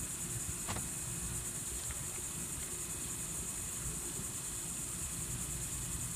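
Steady low background rumble with a constant high hiss, and a faint click a little under a second in.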